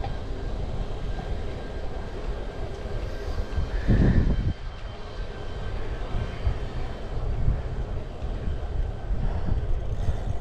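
Wind buffeting the microphone and tyre rumble from a road bike riding along a paved road, a steady uneven low rush, with one louder gust-like surge about four seconds in.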